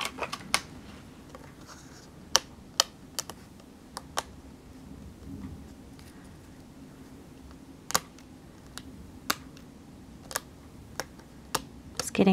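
Irregular light, sharp clicks and taps as a fine metal-tipped pick tool pokes small die-cut paper stars out of a cardstock panel on a craft mat, about fifteen in all and unevenly spaced.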